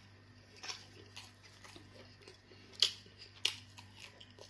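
Close-miked chewing of fufu and stew: soft, wet mouth clicks and smacks, with a few sharper clicks, the loudest about three seconds in.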